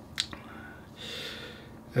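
A man's mouth click (lip smack) about a quarter second in, then a soft in-breath through the mouth about a second in, taken in a pause between sentences.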